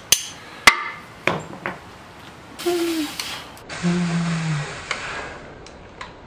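A hammer striking the bottom end of a BMW M20 engine's cast-iron block during teardown: two sharp, ringing metal knocks in the first second, then two lighter taps. After that comes a stretch of hissy shop noise.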